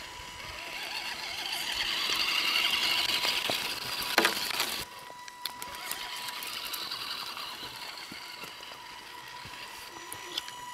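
Axial SCX10 Wraith/Honcho hybrid RC crawler's electric motor and gear drive whining as it crawls over twigs and leaf litter, growing louder over the first few seconds, with a sharp knock about four seconds in. The whine drops suddenly soon after and carries on more quietly.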